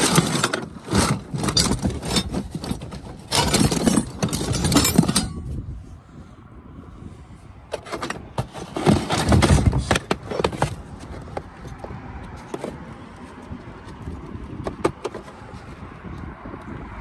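Loose metal hand tools (files, screwdrivers and the like) clinking and clattering against each other in a cardboard box as a hand digs through them. Busy clatter for the first five seconds, another burst of rattling and knocking about nine to ten seconds in, then only occasional clicks.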